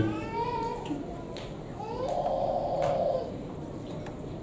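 A baby in the congregation fussing: two drawn-out, wavering cries, a higher thinner one at the start and a lower, louder one about two seconds in.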